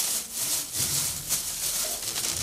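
Dried fruit slices rustling and crackling as hands in plastic gloves dig and stir through a heap of them, the sound rising and falling with each movement.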